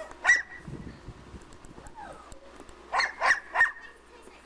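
A dog barking: one bark just after the start, then a run of three quick barks near the end.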